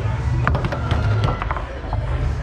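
Foosball in play: sharp cracks of the hard ball struck by the table's plastic men and rebounding off the walls, a loud one about half a second in and a quick pair about a second and a half in, over background music.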